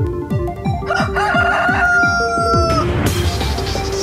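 A rooster crowing once, starting about a second in and lasting about two seconds before cutting off, laid over electronic intro music with a steady beat. A rushing noise sweeps in near the end.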